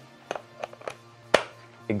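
A series of short plastic clicks and knocks as an Ajax Socket smart plug is pushed into a power strip outlet, the loudest a single sharp click about a second and a half in. Faint background music plays underneath.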